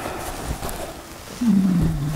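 Papers and card rustling softly as they are handled. About one and a half seconds in, a man makes a low, drawn-out wordless vocal sound, a hum or 'uhh', that dips slightly in pitch and then holds.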